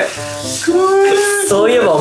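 A person's voice drawn out in long, wavering held notes, like a yell or howl, rather than ordinary speech.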